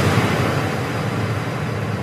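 Explosion sound effect dying away: a steady rushing noise that fades slowly and stops near the end.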